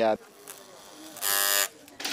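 Electric hair clippers buzzing loudly for about half a second, starting a little over a second in.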